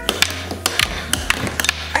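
Plastic puck clacking quickly and irregularly against plastic mallets and the rails of a mini tabletop air hockey table during a fast rally.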